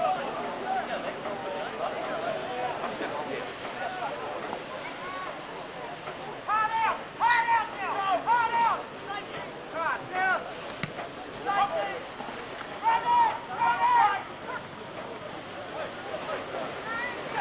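Voices shouting at a rugby league match: a low murmur of chatter, then from about halfway through several loud, high-pitched yells in short runs, with a last burst near the end.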